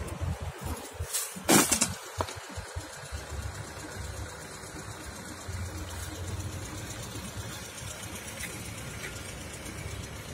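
A low, steady outdoor background rumble, with a brief loud rustle about one and a half seconds in.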